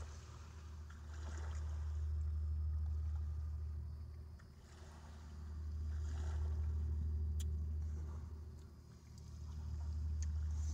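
A low, steady rumble that swells and fades about every four seconds, with faint chewing sounds from eating fries.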